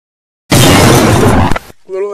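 A sudden, very loud crash about half a second in, lasting just over a second and distorting at full volume. Near the end a voice starts to cry out.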